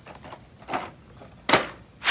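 Handling noise from a plastic blister-packed Hot Wheels five-pack: a soft rustle, then one sharp clack about a second and a half in as the pack is set down into a plastic basket.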